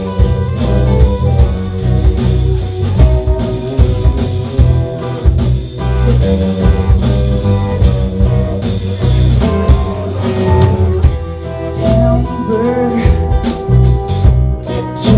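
A live rock band playing an instrumental passage on electric and acoustic guitars, bass and drum kit, with a steady beat. The drums thin out for a couple of seconds late in the passage before coming back in.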